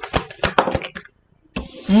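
Tarot cards being handled and pulled from the deck: a quick run of small clicks and snaps through the first second, then a short pause.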